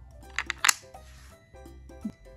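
Three sharp wooden clacks in quick succession about half a second in, as wooden puzzle pieces are handled and set into a wooden inset board, over soft background music.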